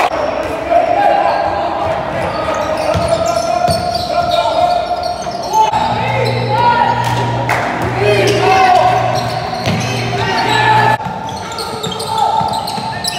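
Basketball game sound in a gym: a ball bouncing, sneakers squeaking on the court floor, and players' and spectators' voices echoing in the hall.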